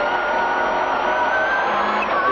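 Subaru Impreza WRC's turbocharged flat-four engine heard from inside the cabin, pulling hard with a steady high-pitched note that climbs slowly as the car accelerates.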